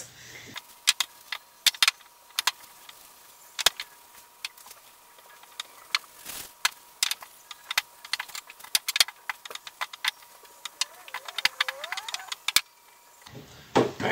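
Wooden rolling pin rolling out stiff cracker dough on a silicone baking mat, with many irregular clicks and knocks as the pin presses and shifts against the mat and table.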